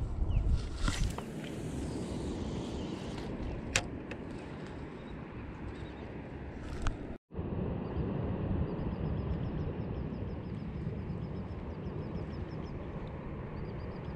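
Wind buffeting the camera microphone outdoors on open water, a steady low rumble. A brief rush comes about a second in and a single sharp click comes about four seconds in. Faint rapid ticking, about five a second, runs through the second half.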